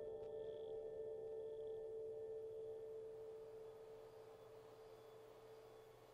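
Film soundtrack: one long held pure tone, like a singing bowl or sine drone, slowly fading out.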